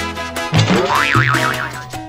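Upbeat salsa-style background music, with a cartoon boing sound effect over it about half a second in: a quick rising glide that then wobbles up and down before fading.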